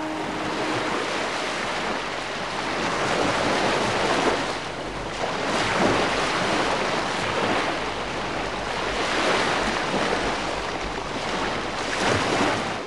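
Heavy rain falling in a steady rush that swells and eases every few seconds. The last notes of music fade out in the first second.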